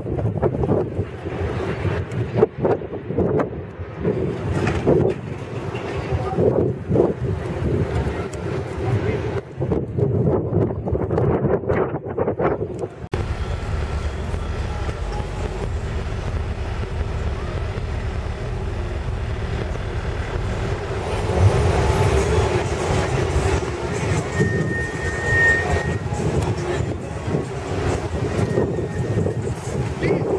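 Outdoor vehicle noise with low rumble and wind on the microphone, with some voices in the background; the sound changes abruptly about a third of the way through.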